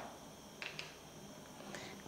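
Faint light clicks of plastic measuring spoons handled over a plastic tub, two close together about half a second in, over quiet room tone.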